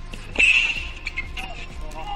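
A tennis ball struck by a racket about half a second in, followed by a short high squeak, with background music underneath.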